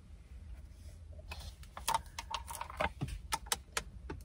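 A thin plastic water bottle crackling and clicking as it is handled and drunk from: an irregular run of short, sharp cracks starting about a second in, over a low steady rumble in the car cabin.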